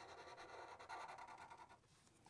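Faint scratching of a Sharpie marker tip drawing lines on paper, stopping shortly before the end.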